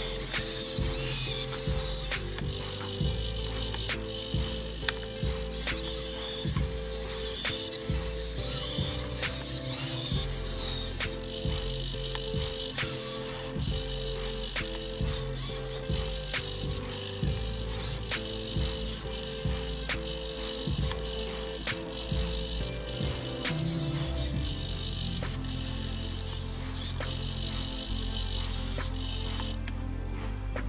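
Hobby RC servos of an Arduino plot clock whirring in short bursts with sharp clicks as they swing the pen arm to erase the board and write the time, over background music.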